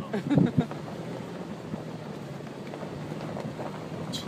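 Nissan Xterra SUV driving slowly over a rough, rocky dirt road, heard from inside the cab: a steady low engine drone with tyre and road noise. A few short knocks in the first half-second.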